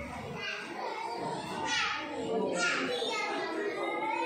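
Young children's voices talking and calling out, with two high calls about two and three seconds in.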